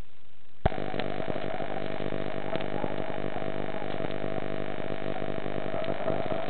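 A steady hum made of many evenly spaced tones switches on abruptly with a click just over half a second in and holds unchanged.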